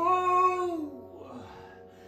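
A singer's voice holding a long final note that slides down in pitch and fades out about a second in, as the song ends, leaving it nearly quiet.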